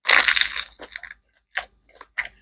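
A loud crunch as a bite is taken from a crispy fried Hmong egg roll, followed by a few shorter crunches of chewing.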